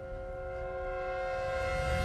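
A held, horn-like chord of steady tones in the background music, slowly growing louder over a low rumble.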